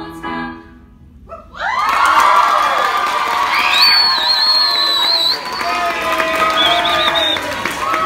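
The last sung note and keyboard chord of a song cut off. After a brief lull, an audience of young people bursts into loud cheering, screaming and applause, with a sustained high-pitched shriek about halfway through.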